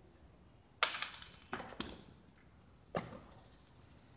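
Hard jai alai pelota in a rally, striking the fronton wall and court floor and meeting the wicker cestas: four sharp cracks with a short echo, the first (about a second in) and the last (about three seconds in) the loudest.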